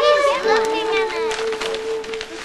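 Excited children shouting and squealing together over a soprano saxophone holding one long note.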